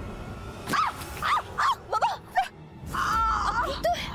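A woman's short, breathless cries while running: five quick yelps falling in pitch, then one longer held cry near the end.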